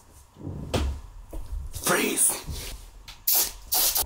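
An aerosol insect-spray can fired in two short hissing bursts near the end, among handling knocks and low voices.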